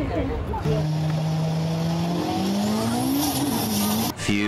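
Racing video game car sound: a simulated race-car engine holding a steady note and then rising, with tyres screeching as the car skids and spins up tyre smoke.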